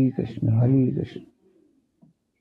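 A man's voice making two drawn-out, wordless-sounding utterances, each about half a second long with a pitch that rises and falls, within the first second and a half.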